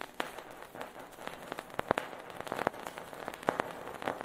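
Vinyl record surface noise with the music faded out: irregular crackle and pops over a faint hiss, with a few louder pops around the middle and near the end.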